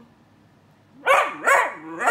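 Siberian husky puppy "talking": about a second in, three quick pitched calls whose pitch bends up and down, the third running past the end. It is answering the prompt to say "I love you" with a three-syllable husky vocalization.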